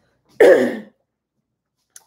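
A woman clears her throat once, a single short, harsh burst about half a second in.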